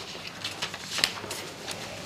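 Paper sheets rustling and shuffling as documents are handled and leafed through at a table, in soft, scattered crackles with one sharper rustle about halfway through.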